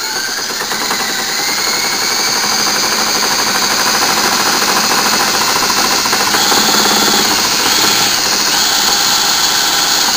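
Cordless drill running steadily, spinning a GM 10SI alternator by its shaft at just under a thousand rpm. The whine rises in pitch and grows louder over the first couple of seconds as the drill speeds up, then holds with small wavers.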